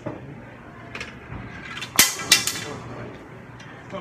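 Two sharp hard clacks about a third of a second apart, about two seconds in, over low room chatter.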